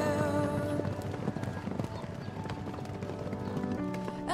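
A herd of Lipizzaner mares and foals galloping over grass: many hooves beating in a dense, irregular patter, with music continuing quietly underneath.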